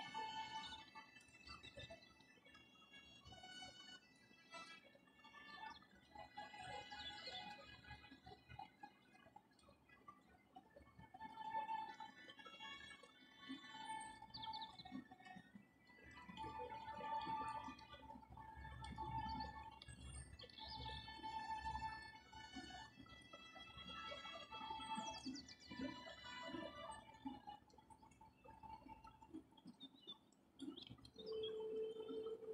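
Soft background instrumental music: a run of held, pitched notes that change every half second or so.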